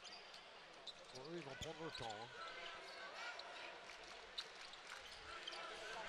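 Faint arena crowd noise with a basketball being dribbled on a hardwood court, and a few faint shouts between about one and two and a half seconds in.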